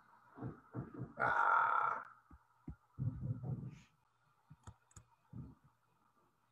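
A man's wordless vocal noises, a breathy sigh-like sound about a second in and low grunts a little later, followed by a few faint clicks from computer input while he switches apps, over a faint steady hum.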